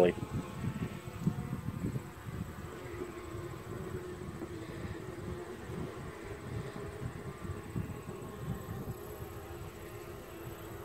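Honey bees humming around an opened mini nuc: a steady hum, with an uneven low rumble underneath.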